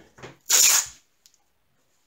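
A strip of masking tape pulled off the roll in one quick, loud rip about half a second in, after a softer short rustle of the tape.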